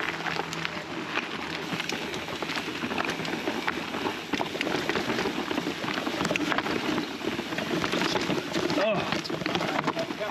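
Fezzari La Sal Peak full-suspension mountain bike riding down a rocky dirt trail: tyres crunching over dirt, leaves and rock, with a dense patter of small knocks and rattles from the bike.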